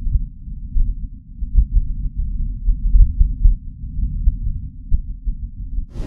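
Martian wind picked up by NASA's Perseverance rover's microphone: a low, muffled rumble that rises and falls in irregular gusts.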